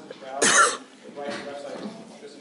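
One loud, short cough about half a second in, with a man talking around it.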